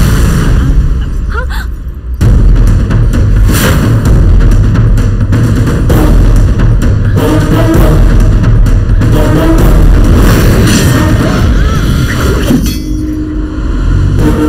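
Loud action-film soundtrack: a dramatic music score mixed with booming hits and crashing impact effects, with a sudden heavy hit about two seconds in after a brief drop.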